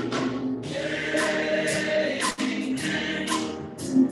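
Gospel-style church music: a choir sings over keyboard chords, while a drum kit keeps time with repeated cymbal strokes.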